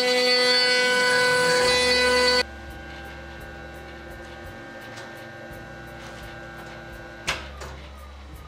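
CNC router spindle running steadily with a loud whine while carving wood. About two and a half seconds in, the sound drops suddenly to a much quieter steady machine hum with faint regular ticking, and there is one sharp click near the end.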